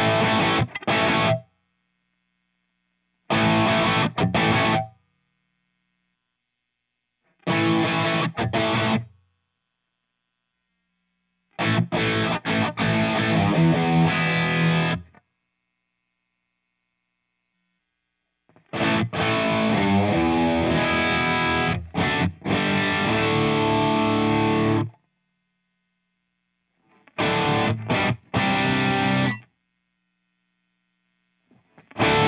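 Distorted electric guitar played through a tube amp and the Two Notes Torpedo Captor X, with the Twin Tracker stereo effect adding a second copy of the playing. Six short riffs are separated by silent gaps, and the longest runs about six seconds, in the second half.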